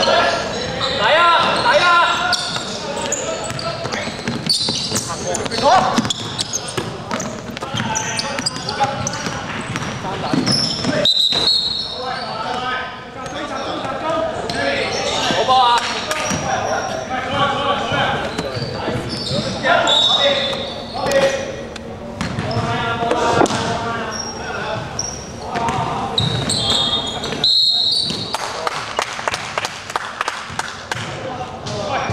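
Indoor basketball game: players' shouts and calls in a large gym hall, with the ball bouncing on the wooden court.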